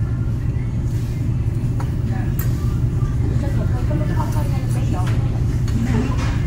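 Restaurant room noise: a steady low hum with indistinct background chatter from other diners and a few faint clicks.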